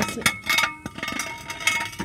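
A metal car jack being set and handled under the car, clinking and knocking several times, with a short metallic ring after the knocks.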